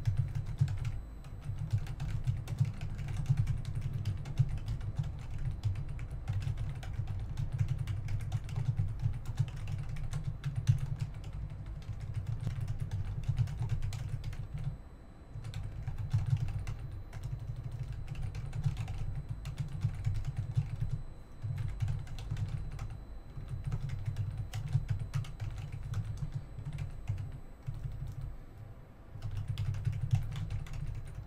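Typing on a computer keyboard: fast runs of key clicks, broken by a few brief pauses.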